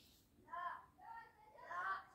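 Faint, distant voice speaking in short bursts in the background.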